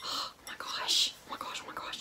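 A woman whispering, breathy and unvoiced, loudest at the start and about a second in.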